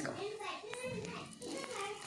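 Children's voices talking, with two short clicks in the middle.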